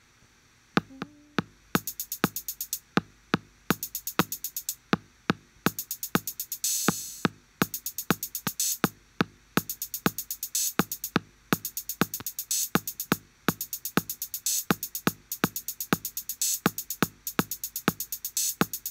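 An 808-kit drum machine pattern plays in a loop. It starts about a second in as a fast run of short, sharp hits, about eight a second, with regular gaps, and a brief hissy cymbal-like burst near the middle.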